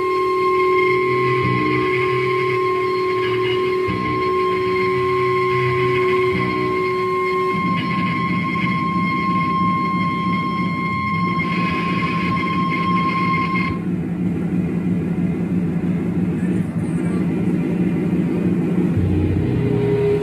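Live heavy band playing loud, slow, sustained distorted guitar chords, with a pitch change about seven and a half seconds in. A steady high ringing tone holds over the chords and cuts out about two-thirds of the way through.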